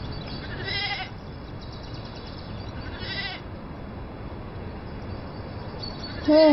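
Two short animal calls with a wavering pitch, about a second in and again about three seconds in, over a steady low background.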